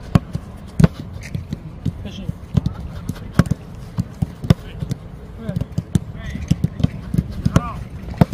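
Footballs being kicked in a passing drill on grass: repeated sharp thuds of boots striking the ball at uneven intervals, with players' short shouted calls in between.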